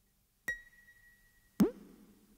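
After half a second of silence, the intro of an electronic pop track: a synthesizer click with a steady high tone held for about a second, then a loud electronic drum hit whose pitch falls quickly.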